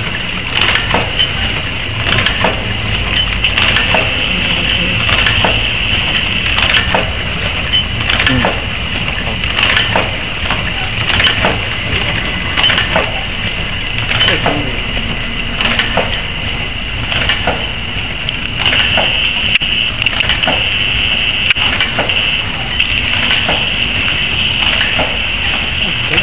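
MQD 18 II tea bag packing machine running: a steady high hum with a regular mechanical clicking, about two clicks a second, as its mechanisms cycle.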